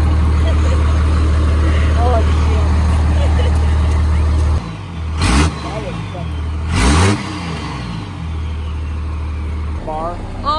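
A vehicle engine running with a steady low hum, then revved twice in short blips about five and seven seconds in, dropping back to a steady idle between and after them. Faint voices can be heard in the background.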